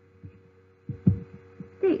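A single low thud about a second in, followed by a few softer low thuds, over a faint steady electrical hum; a woman's voice begins near the end.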